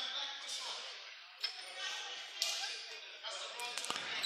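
Faint murmur of voices in a gymnasium, with a few sharp knocks or clicks in the second half.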